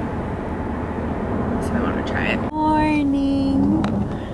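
Steady low rumble inside a car's cabin. After a sudden cut, a single long drawn-out voice note is held for about a second and a half, falling slightly in pitch.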